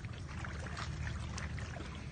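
Water sloshing and splashing as water buffalo wade through a shallow pond, over a steady low rumble.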